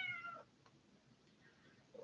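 A cat meowing once: a single short, faint call that bends up and falls away in the first half second, then near silence.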